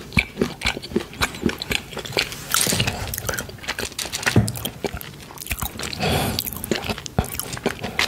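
Close-miked chewing of milk chocolate, with wet mouth clicks and smacks throughout. A couple of soft swishes come from a fluffy brush sweeping across the microphone.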